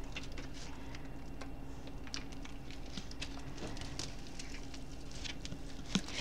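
Light, scattered clicks and taps of a bamboo sushi mat and food being handled for rolling, over a faint steady hum.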